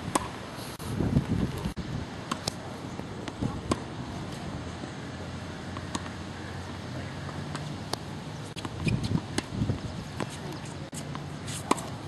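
Tennis balls bouncing on a hard court: a series of sharp, irregularly spaced knocks over a steady low rumble of wind on the microphone.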